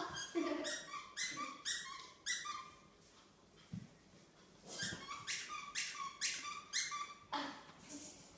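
Maltipoo puppy yapping: short, high-pitched yaps about two a second, in two runs with a pause of about two seconds between them.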